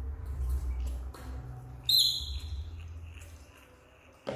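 Young macaques feeding from milk bottles: one short, high-pitched squeak about two seconds in that trails away, over a low rumble and a few faint clicks.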